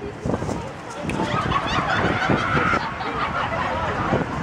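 A public-address announcement over loudspeakers, a nasal, wavering voice, amid crowd chatter.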